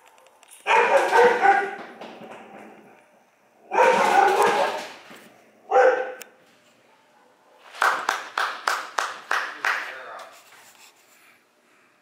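Dog barking in several loud bursts, ending in a run of quick barks from about eight to ten seconds in.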